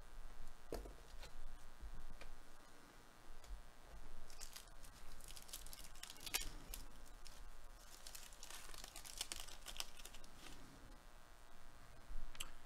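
Baseball card pack wrapper being torn open and crinkled by hand, in two stretches of crackly rustling with a few soft handling clicks before them.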